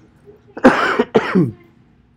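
A person coughing twice, two short harsh bursts in quick succession about a second in, much louder than the quiet room around them.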